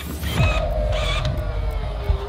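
A door creaking on its hinges as it is pushed open: one long creak, falling slightly in pitch, over a low rumble.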